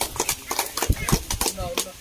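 A run of irregular sharp clicks and taps, some with a low thump, with a brief bit of voice near the end.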